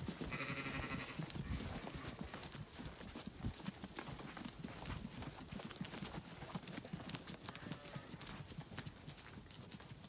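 Zwartbles sheep moving over grass close by: a run of soft, irregular steps and rustles from hooves and feet on the turf, with a faint, brief bleat about half a second in.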